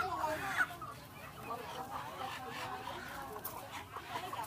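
Live chickens clucking and squawking while being handled, loudest in the first second.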